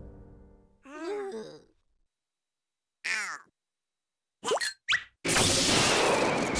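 Cartoon sound effects: a fading musical note, then two short wordless character calls, the first wavering and the second falling in pitch. Two quick rising zips follow, then a loud rushing magic-blast sound starts about five seconds in and keeps going.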